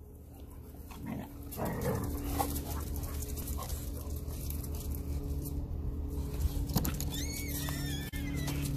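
A pack of small and medium dogs whining and snuffling as they crowd together, with scattered clicks and a high wavering whimper near the end.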